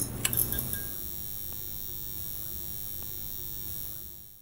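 Sound effect for an animated title logo: a few quick clicks, then a steady shimmering sound of several held high tones that fades away at the very end.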